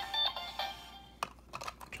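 Electronic tones from the Seiza Blaster toy's speaker fade out within the first second. A few sharp plastic clicks follow as a Kyutama is pressed onto the blaster.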